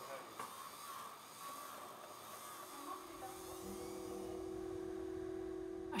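Whine of a handheld electric rotary tool grinding, fading after a couple of seconds. Then a held low musical chord comes in about halfway through and carries on.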